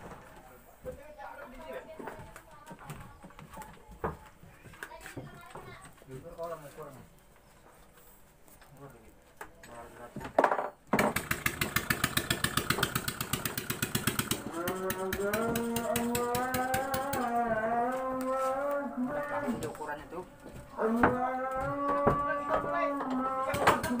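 Small single-cylinder petrol engine of a katinting racing boat starts about ten seconds in. It runs with a fast, even firing beat, then revs with a wavering pitch. Before the start there are only light knocks and handling sounds.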